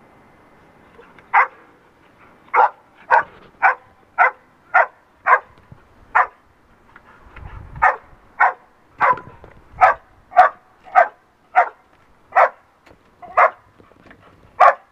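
Search dog giving a bark alert: a run of about seventeen sharp single barks, roughly two a second with a short break midway, signalling that it has found the hidden person in the rubble.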